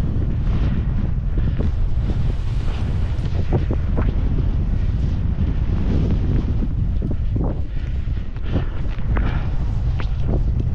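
Wind buffeting the microphone of a skier moving downhill at speed, a steady low rumble, with the skis hissing through fresh snow in short swishes on each turn.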